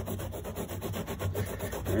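A stiff-bristled hand brush scrubbing carpet pile in quick back-and-forth strokes, working a stain-removal solution into the fibres.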